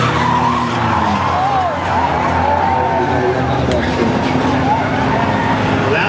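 A pack of front-wheel-drive skid plate race cars running at speed, engines droning, with wavering high squeals as the locked rear ends drag and slide on the asphalt.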